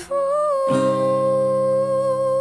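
Music: a woman singing one long held note with acoustic guitar, a strummed chord coming in under the voice a little under a second in.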